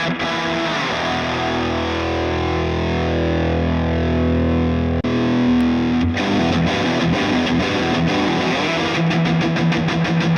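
Electric guitar played through a Hotone Ampero Mini digital amp and effects modeler with a distortion model switched on, giving a driven tone. A chord rings out for several seconds, then quicker rhythmic playing starts about six seconds in.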